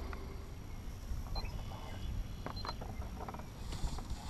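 Quiet outdoor ambience: a steady low rumble with a few faint, short high chirps and light clicks.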